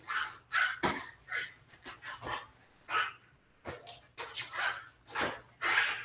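Shadow-boxing: a quick run of about a dozen short, sharp bursts of sound, roughly two a second, in time with punches, back fists and uppercuts thrown at the air. They come from the striker's breath and his sleeves swishing with each strike.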